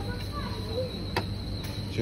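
Shop background: a steady high-pitched whine over a low hum, with one sharp click about a second in.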